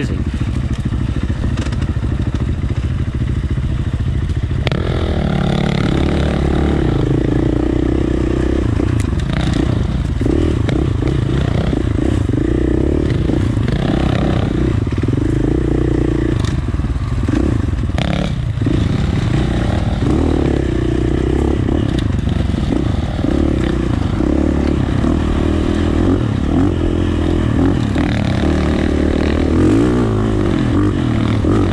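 2019 KTM 450 dirt bike's single-cylinder four-stroke engine running under changing throttle on a trail ride, the note getting louder about four or five seconds in. A few sharp clacks come through along the way.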